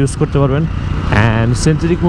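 A man talking over the steady low rumble of a Suzuki GSX-R 150 motorcycle being ridden in traffic.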